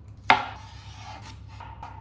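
One sharp knock of kitchen prep about a third of a second in, ringing on briefly after the strike.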